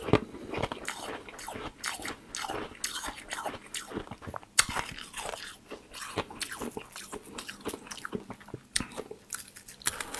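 Slushy ice from a frozen water bottle being bitten and chewed: a steady run of irregular crisp crunches and crackles, with a few sharper, louder snaps about halfway through and near the end.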